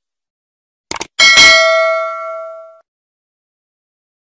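Subscribe-button animation sound effects: a quick double mouse click about a second in, then a single bell ding that rings out and fades over about a second and a half.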